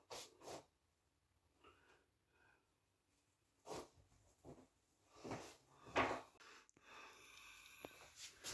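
Footsteps walking toward the microphone, four steps a little under a second apart and growing louder, after two brief soft rustles. A sharp click follows shortly after the last step.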